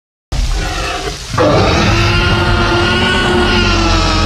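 Tyrannosaurus rex roar sound effect: a quieter growl for about a second, then one long, loud roar held steady.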